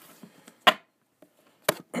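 A person clears their throat once, a short sharp burst about two-thirds of a second in. About a second later comes a single sharp knock.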